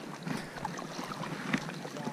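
Paddle strokes from a stand-up paddle board: water sloshing and lapping at the board with scattered small splashes and ticks, one sharper splash about one and a half seconds in. Light wind on the microphone.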